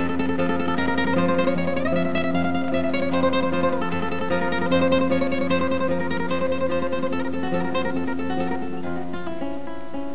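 Solo flamenco guitar playing fast runs of plucked notes over a steady low bass note.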